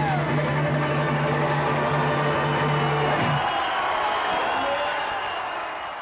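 A bluegrass band with banjo and guitar holds its final chord, which stops about three and a half seconds in. The audience then applauds and cheers, and the sound fades out near the end.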